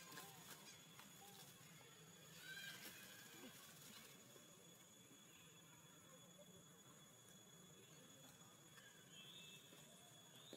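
Near silence, with a few faint, short high calls: one about two and a half seconds in and another near the end.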